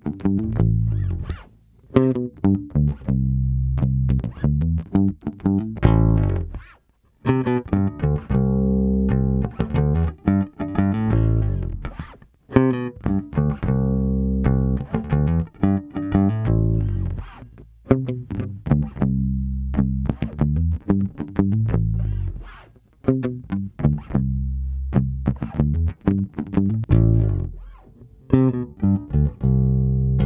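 Electric P basses played with a felt pick, one repeated picked line through the amp. A D. Lakin 5730 short-scale P bass with a Lindy Fralin pickup and a Music Man Cutlass take turns, with short breaks between takes.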